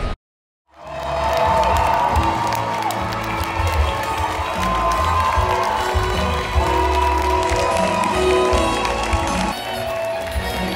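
Theatre audience applauding and cheering over the orchestra's curtain-call music, which starts about a second in after a brief silence.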